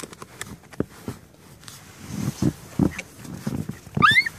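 Papillon dogs growling in several short bursts while snapping at a plastic snow shovel, after a few sharp crunches and scrapes of the shovel and snow in the first second or so.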